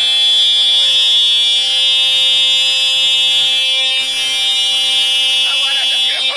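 A loud, steady buzzing tone with many overtones, held unbroken, with a voice faintly over it near the end.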